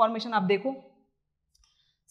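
A woman lecturing, her voice stopping under a second in, followed by a near-silent pause with a single faint click.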